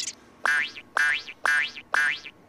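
Cartoon boing sound effect played four times, about half a second apart. Each is a springy note that jumps in and rises quickly in pitch.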